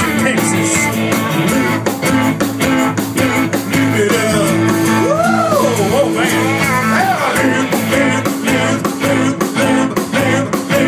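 Live country-rock band playing loudly, with electric guitars, keyboard and a steady drum beat, and a note that slides up and back down about halfway through.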